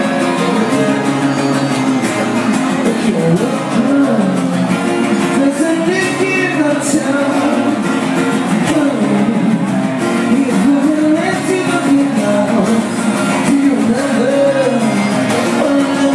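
Live band music: a strummed acoustic guitar with a male voice singing a melody over it.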